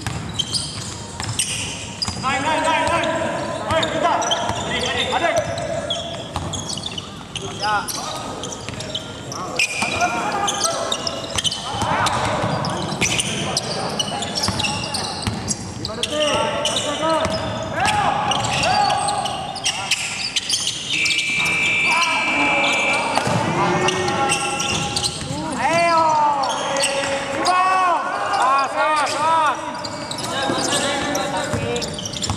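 Live court sound of a basketball scrimmage in a large, echoing hall: a basketball dribbling on a hardwood floor, sneakers squeaking in quick bursts, and players calling out. A steady high whistle blast lasts about two seconds roughly two-thirds of the way through.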